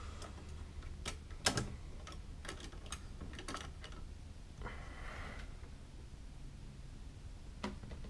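Scattered light metal clicks from an LGA 2011 CPU socket's retention levers being unhooked and its load plate swung open, the loudest about one and a half seconds in. A short scrape follows about five seconds in, and a last click comes near the end.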